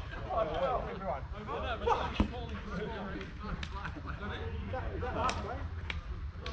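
Players' voices talking and calling, with one sharp thump about two seconds in.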